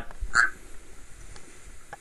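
Quiet room tone with one brief short sound about half a second in and a couple of faint clicks later.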